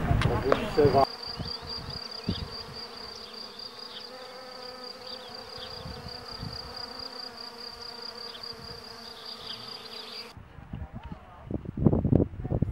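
Insects chirring and buzzing: a steady, high-pitched, fast-pulsing chirr over a fainter lower hum, which cuts off suddenly near the end. A louder jumble of other sound fills the first second.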